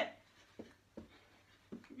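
Soft thuds of feet landing on a carpeted floor during side steps: three faint, separate knocks, about half a second in, at about a second, and near the end.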